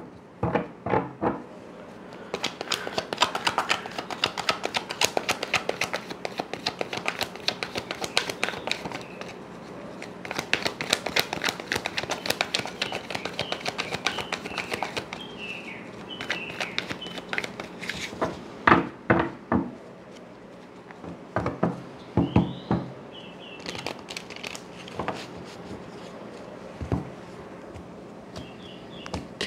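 A deck of tarot cards being shuffled by hand: a long run of rapid, dense card clicks for about a dozen seconds, then slower scattered clusters of cards slapping and riffling.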